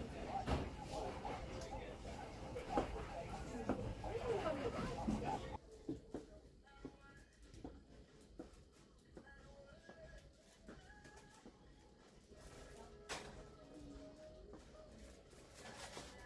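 Shop-floor sound: a small child's voice and other shoppers' talk for about the first five seconds, then a sudden drop to quieter store background with faint music and small clicks.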